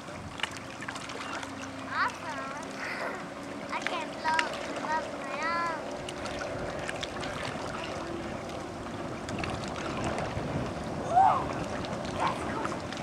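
Motorboat engine droning steadily in the distance as it tows a tube, the hum dying away about eight seconds in. Several short, high, rising-and-falling shouts come over it.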